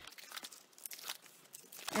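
Quiet rustling of stiff paper pages being turned in a book of die-cut punch-out sheets, with a few small ticks of the paper.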